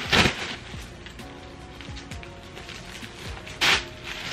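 Plastic drawstring garbage bag being handled and filled with clothes: a loud crackling rustle at the start and another near the end. Quiet background music plays underneath.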